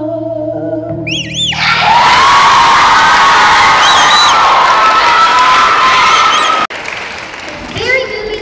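A held sung note ends about a second in. An audience then breaks into loud applause and cheering with whoops, which cuts off suddenly a little over a second before the end and gives way to quieter crowd noise.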